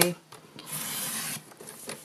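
Stampin' Up paper trimmer's blade carriage drawn down its rail, slicing a strip off a sheet of cardstock: one short rasp a little under a second long.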